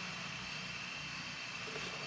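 A steady low hum with a faint high-pitched whine above it, unchanging and without any distinct events.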